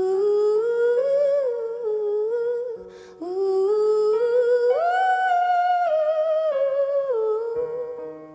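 A woman's voice singing a wordless melody into a microphone, in two long phrases with a breath between them about three seconds in. The second phrase rises to its highest held note and then falls away near the end, over a faint, soft sustained accompaniment.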